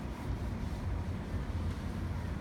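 Low, uneven rumble of wind buffeting an outdoor microphone, with no other distinct event.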